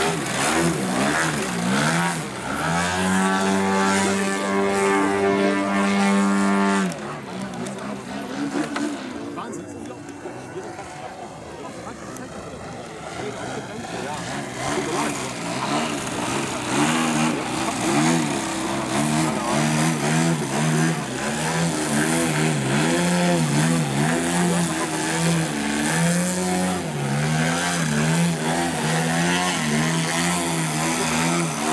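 Engine and propeller of a radio-controlled Extra 330SC aerobatic model plane. It is held at a steady high pitch for a few seconds, then throttled back sharply about seven seconds in and quieter for a while. In the second half the revs rise and fall over and over as the throttle is worked to hold the plane hanging nose-up on its propeller.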